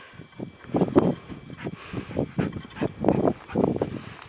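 Footsteps crunching and rustling through dry grass and dirt, a few soft steps a second.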